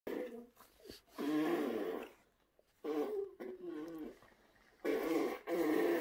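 A toddler making long, wordless, wavering vocal noises, beatbox-like, in four drawn-out stretches with short silences between, the last the longest.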